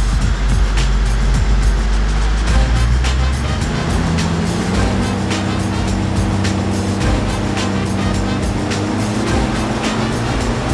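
Background music with a steady beat, over a car engine running under load on a chassis dynamometer during a power run. From about four seconds in, the engine note rises slowly as the revs climb.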